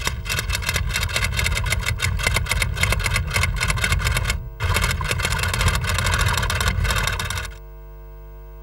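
A rapid, even mechanical clatter of many clicks a second, pausing briefly about halfway and stopping shortly before the end, where a steady low hum is left.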